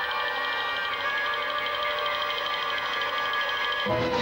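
A steady, buzzing electronic drone with many high overtones held at one pitch, from the advert's soundtrack; it cuts off at the very end.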